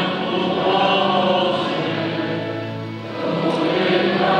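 Choir singing a slow liturgical chant in held notes; one phrase fades about three seconds in and the next begins.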